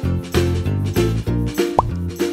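Bouncy children's background music with a steady bass beat, and a short rising 'plop' sound near the end.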